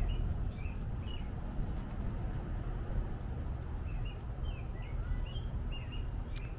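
Small birds chirping: a few short chirps just under a second in, then a run of them in the second half, over a steady low rumble of outdoor background noise.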